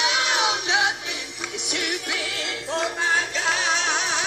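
Live gospel band music led by an electric guitar, its notes bending up and down, with a note held in vibrato near the end.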